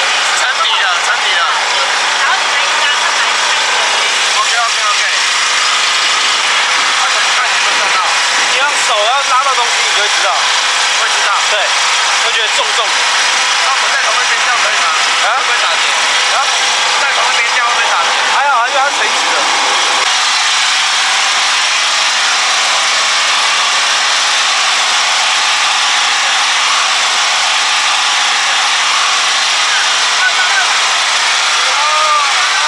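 Boat generator engine running steadily, a constant drone with a steady hum; its pitch shifts about twenty seconds in. Voices talk faintly over it now and then.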